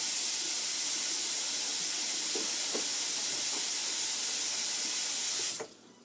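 Kitchen sink faucet running steadily, a hissing stream of water. It cuts out sharply for a moment near the end.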